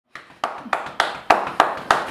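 Hand claps in a steady rhythm, about three and a half a second, seven in all, growing louder.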